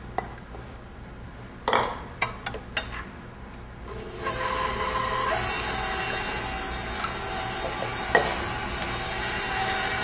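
A few light knocks and clicks, then about four seconds in a stand mixer's motor starts and runs steadily, its beater mixing eggs into a shortening, sugar and molasses batter.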